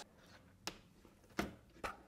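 Three faint, short clicks about half a second apart as thermostat wires are pushed into the push-in terminals of a plastic Nest thermostat base plate, the first about two-thirds of a second in.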